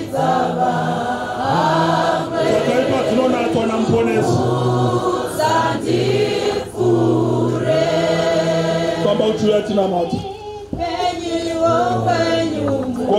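A congregation of many voices singing a gospel chorus together, holding long notes.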